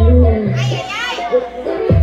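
Latin dance-fitness music whose bass beat drops out about half a second in, leaving high-pitched voices crying out with bending pitch for about a second, before the beat comes back in near the end.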